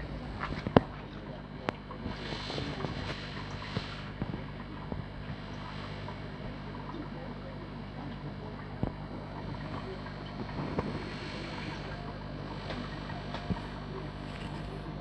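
Steady low hum of aquarium equipment running the air-driven sponge filters, with a handful of sharp clicks, the loudest about a second in.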